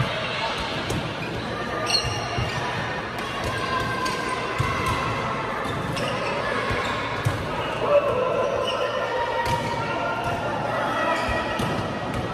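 A light volleyball rally: the soft plastic ball is struck by hands several times, each hit a sharp slap ringing in a large hall. Players' voices call out between the hits.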